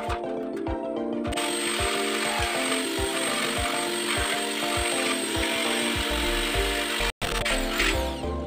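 Corded electric drill running steadily, boring into a thin steel tube, starting about a second in under background music with a steady beat. The sound cuts out for an instant near the end.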